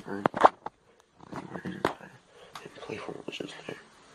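Quiet, indistinct talking, partly whispered, with a few sharp clicks in the first second or two.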